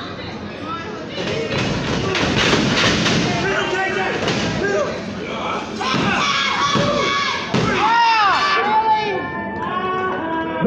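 Thuds of bodies hitting a wrestling ring's canvas, a run of them about two to three seconds in, with a crowd of spectators shouting and yelling throughout.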